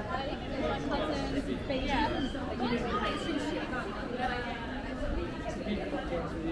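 Chatter of passers-by on a busy pedestrian street: several voices talking at once, none standing out, over a low steady rumble.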